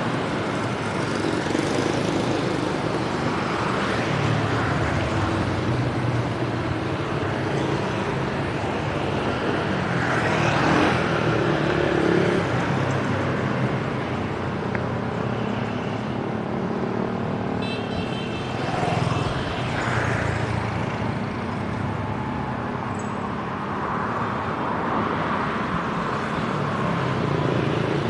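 Street traffic, mostly motorbikes, running and passing by continuously, with several louder passes as vehicles go by close.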